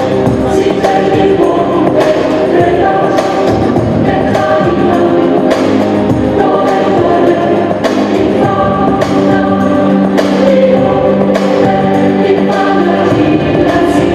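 Runway music with choir-like singing in long held notes, playing without a break.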